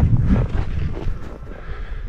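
Wind buffeting the camera's microphone: an uneven low rumble that eases slightly in the middle.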